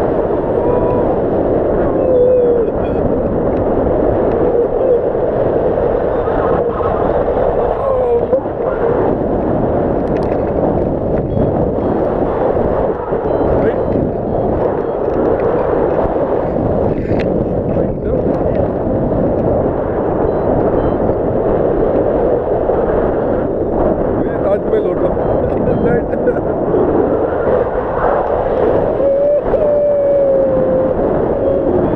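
Loud, steady wind rushing and buffeting over an action camera's microphone in paragliding flight, with a few brief wavering whistles.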